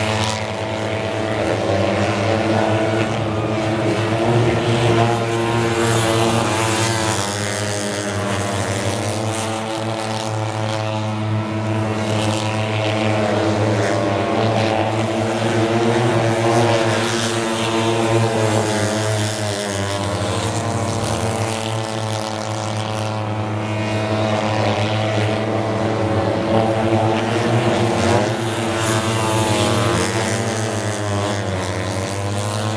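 Several mini speedway motorcycles racing around the track together, their engines revving up and easing off so the pitch keeps rising and falling, over a steady low drone.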